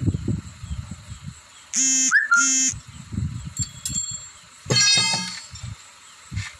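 Repeated low knocks and scrapes of a long metal bar being worked against a truck wheel. About two seconds in, two short steady horn honks sound, and another horn-like tone follows near five seconds in.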